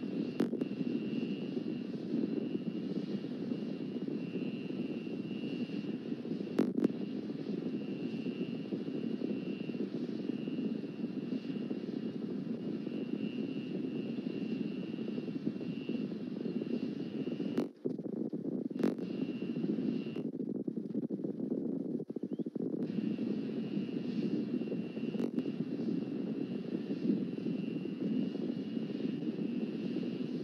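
A steady low rumbling noise with a faint, thin, high-pitched whine over it, broken by a few brief clicks and short dropouts.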